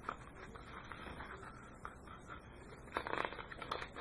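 A picture book being handled, its paper pages rustling faintly, with a short burst of paper crackles and clicks about three seconds in as the book is turned back and brought down.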